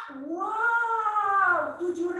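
One long vocal cry imitating a camel, its pitch rising and then falling over about a second and a half.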